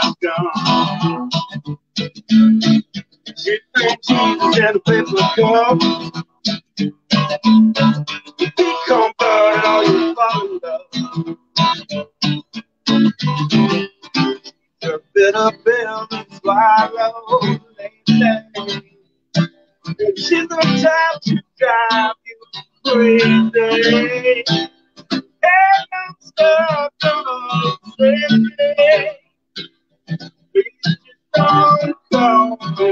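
A song with a singing voice over strummed acoustic guitar, the sound cutting out briefly again and again.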